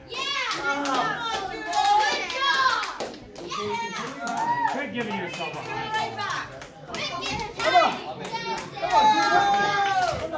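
Children's high-pitched voices shouting and yelling over one another, with a few sharp knocks mixed in; one of the knocks, a little before the end, is the loudest moment.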